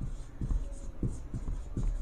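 Marker pen writing on a whiteboard: a run of short, irregular strokes and taps as letters are written.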